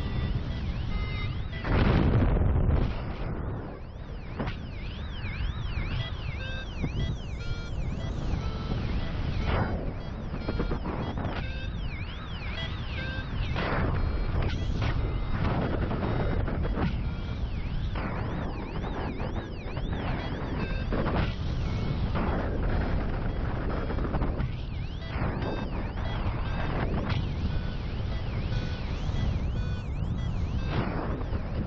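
Paragliding variometer beeping in short tones that shift in pitch, the climb signal for rising air, over steady wind noise on the microphone in flight. The wind gets louder for a moment about two seconds in.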